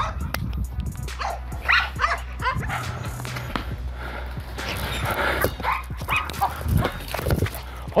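A Rottweiler giving short, excited barks and yips during ball play, keyed up for a ball held above it.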